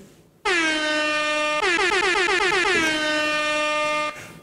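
Air horn sound effect: one long, loud blast starting about half a second in, its pitch settling slightly downward at the onset. A second, slightly higher horn tone joins about a second and a half in, and the blast cuts off abruptly at the end.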